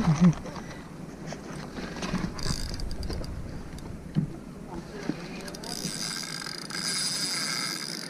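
Spinning reel being wound in after a cast: a steady, high whirring from its turning gears begins about five and a half seconds in. Before it there are a brief voice and a few small handling knocks.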